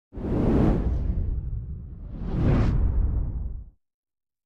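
Two whoosh sound effects for an animated title card. Each swells quickly and fades over about a second and a half, the second one peaking about two and a half seconds in.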